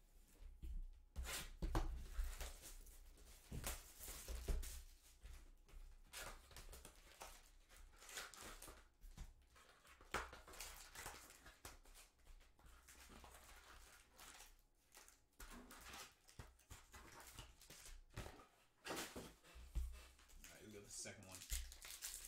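Shrink wrap being torn and crinkled off a sealed trading-card hobby box, then the box and its foil-wrapped packs being handled: irregular crackling and rustling with sharp tearing snaps.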